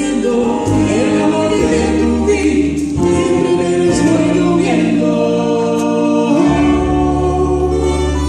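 A small acoustic ensemble playing a song live, with singing voices over guitar, keyboard and a double bass holding long low notes.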